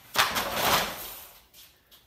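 Magazines and papers sliding off a tipped-up wooden table and falling to the floor: a loud rush that starts about a quarter second in and fades out within about a second.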